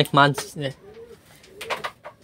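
A man calling to pigeons with quick repeated "aye" syllables, three in the first second, each falling in pitch. This is followed by a quieter stretch with faint low pigeon coos.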